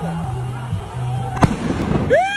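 A single sharp bang about one and a half seconds in, over a low steady tone that steps down in pitch.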